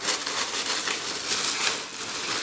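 Crinkly gold metallic wrapping paper rustling and crackling as hands dig through it inside a cardboard box, in irregular crinkles.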